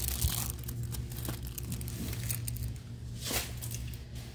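Crinkling and rustling of plastic packaging as packs of paper heart doilies are handled, with the loudest rustle near the start and another sharp crinkle about three seconds in.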